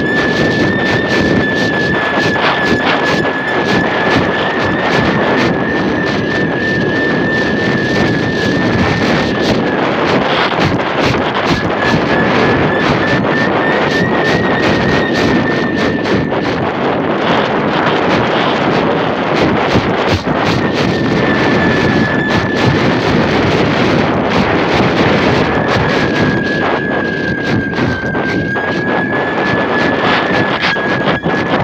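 Strong wind rushing and crackling over a phone's microphone carried aloft on a kite line. A high, thin whistling tone wavers slightly above it and drops out a few times, for a couple of seconds about ten seconds in and for several seconds before the twenty-second mark.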